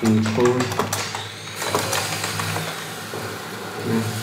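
Computer keyboard typing, a quick run of key clicks that thins out after about two seconds, over steady background music.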